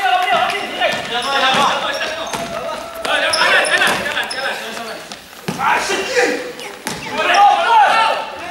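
A basketball bouncing on a wooden gym floor during play, with players' voices calling out over it, in a reverberant sports hall.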